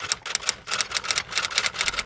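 A quick, uneven run of sharp clicks, like typewriter keys: a typing sound effect, with a short break a little before half-way.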